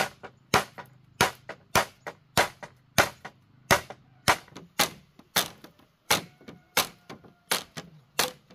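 Machete blade chopping at a green bamboo pole, a sharp knock about twice a second.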